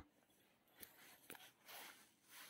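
Near silence, with a few faint ticks and a brief soft rustle from hands sewing a zipper onto a crocheted purse with nylon thread.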